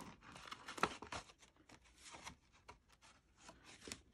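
Faint rustling of cardstock being handled, with scattered light clicks, as a brad is pushed through the die-cut Ferris wheel and the card.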